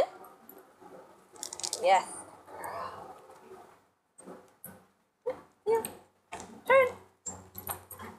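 A young German Shepherd giving a series of short, high whines, about five in the last three seconds.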